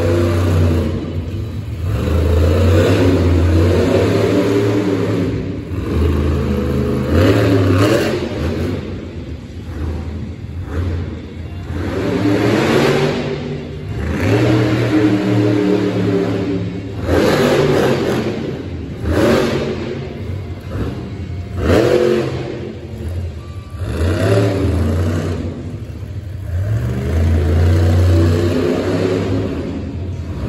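Megalodon monster truck's supercharged methanol V8 revving hard again and again, its pitch climbing and dropping in surges every few seconds as it throttles through its freestyle run.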